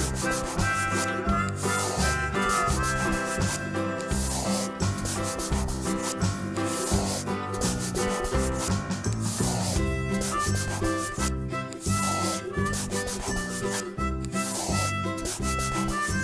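Fast, continuous back-and-forth scribbling of colouring strokes, a marker rubbing on paper, over instrumental background music.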